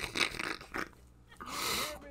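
Voice audio on a Discord call breaking up: a run of crackling clicks over a garbled voice, then a brief burst of hiss with a faint voice under it near the end.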